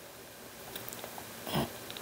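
Faint paper crinkling and small ticks as the prongs of a small metal brad are pressed into layered book paper to pierce a hole, with a slightly louder crunch about one and a half seconds in. The thin prongs are bending rather than going through.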